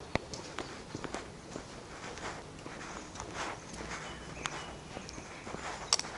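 Footsteps on stone paving, a walking pace of sharp clicks and scuffs about twice a second, the sharpest one near the end.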